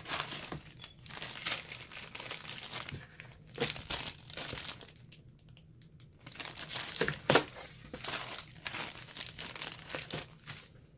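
Clear plastic bag crinkling and crackling as it is handled, mixed with the rustle of hands in a cardboard shipping box. The crackles come in irregular bursts, with a short lull about halfway through and the sharpest crackle about seven seconds in.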